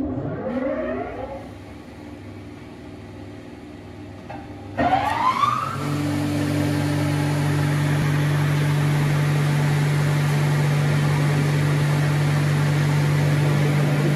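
Martin T25 spindle moulder's electric motors starting up: a rising whine in the first second that then fades, a second, louder start at about five seconds with another rising whine, and then the machine running at speed with a steady hum.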